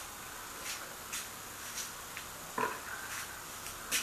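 Light clicks and knocks of a plastic HHO cell case and a water bucket being handled on a table, over a steady hiss, with one short, louder rasp about two and a half seconds in and a sharp click near the end.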